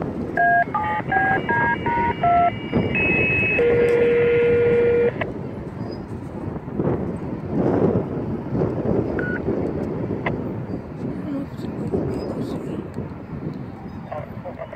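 Touch-tone (DTMF) signalling: a quick run of about eight short two-note beeps, then a longer steady tone lasting about two seconds. This is the kind of tone sequence sent over a fire-department radio to set off a siren.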